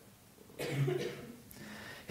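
A man coughing once, about half a second in.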